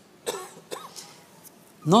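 A man clearing his throat with a few short coughs, and then speech begins near the end.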